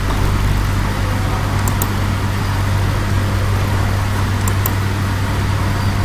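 Steady low electrical hum with a hiss. It sounds like mains hum picked up by the recording microphone. Two faint pairs of short ticks come through, one pair about two seconds in and the other a little past four seconds.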